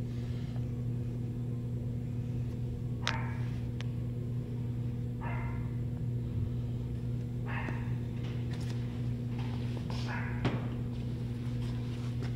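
A steady low hum with overtones throughout. A few brief, soft rubbing noises come from fingers spreading dish soap around a rubber tail-light grommet, about three, five and a half, eight and ten seconds in.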